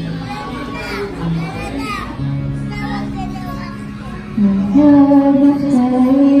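A young girl singing into a microphone over a backing track played through PA speakers; her voice gets louder on a long held note about four and a half seconds in.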